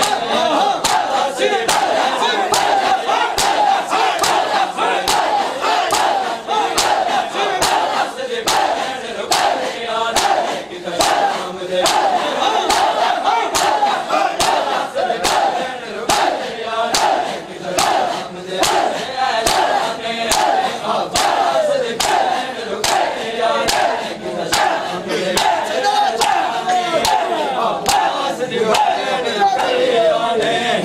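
A crowd of mourners shouting and chanting together over a steady rhythm of sharp slaps, somewhat under two a second: hands beating on chests in Shia matam.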